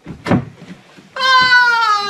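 A short thud as a man tumbles out of a wardrobe onto the stage floor, then, about a second in, a long cry like a cat's meow that falls steadily in pitch.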